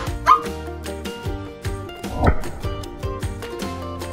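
An air-filled rubber balloon bursts with a pop right at the start, burst by the heat of a barbecue lighter's flame, followed by another sharp sound a moment later. Background music with a steady beat plays throughout.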